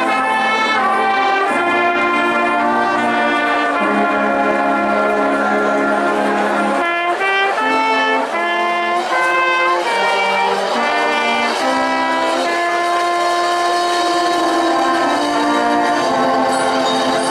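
Marching band brass section of trumpets, trombones and low brass playing chords together. Short changing chords alternate with long held chords, one about a third of the way in and another near the end.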